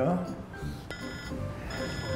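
Mobile phone ringing with an incoming call: a short electronic ringtone phrase about a second in and again near the end.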